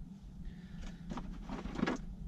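Hands rummaging in a cardboard box and lifting out a bundle of cables: a scatter of short rustles and light knocks, over a steady low hum.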